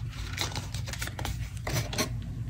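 A few short clicks and rustles from a pin being worked free of its packaging by hand, one about half a second in and another near the end, over a steady low hum.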